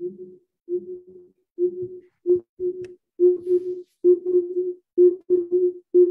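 A single steady tone at one pitch, chopped into short bursts with brief silences between them and growing louder, as heard through a video call's gated audio.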